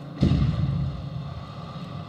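Explosion sound effect from green-screen explosion footage: a sudden boom about a quarter of a second in, followed by a deep rumble that slowly fades.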